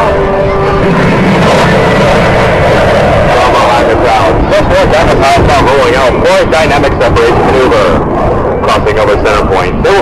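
Loud, continuous roar of Blue Angels F/A-18 Hornet jet engines in flight, with people's voices heard under it in the second half.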